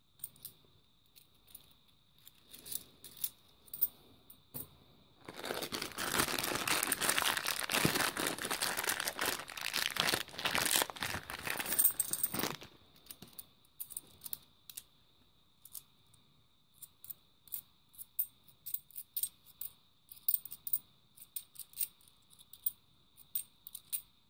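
Small metallic clicks of 50p coins tapping against each other as they are handled. About five seconds in comes a seven-second stretch of plastic rustling and crinkling, like a plastic coin bag being handled, and then the coin clicks go on.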